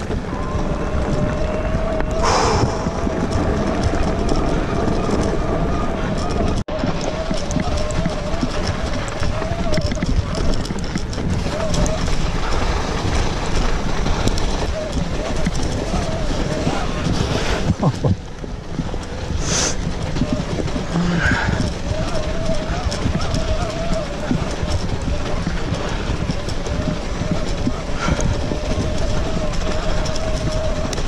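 Electric mountain bike under way: a steady, slightly wavering whine of the pedal-assist motor over the rumble of tyres on the trail and wind on the microphone, with a few sharp clicks and knocks from the bike over bumps.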